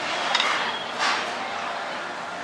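Restaurant dining-room noise: a steady background hum with a few light clinks of dishes and cutlery, the loudest coming about a second in.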